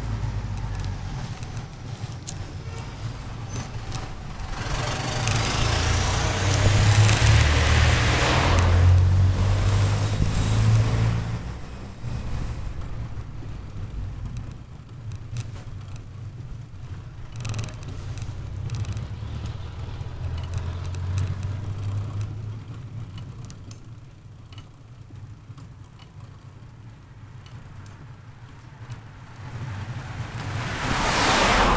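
Wind buffeting and tyre rumble from a bicycle rolling along an asphalt street, picked up by an action camera's microphone mounted low near the front wheel. The noise swells from about five seconds in, peaks around eight to eleven seconds, then eases to a lower, uneven rumble.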